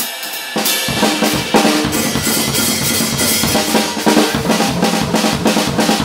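Acoustic jazz drum kit: swing time on the cymbals, then from about a second in a dense drum break of snare, tom-toms and bass drum, as in a traded four- or eight-bar break.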